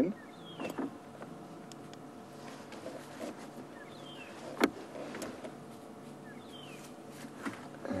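Steady low hum of an idling game-drive vehicle engine, with one sharp click a little past halfway and a few short, faint, high falling chirps.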